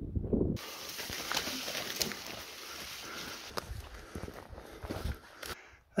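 Footsteps and rustling of a person walking through dry scrub, with scattered sharp clicks of twigs and brush against the body.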